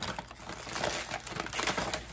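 Crinkly packaging rustling and crackling in irregular little bursts as items are handled and pulled out of a gift bag.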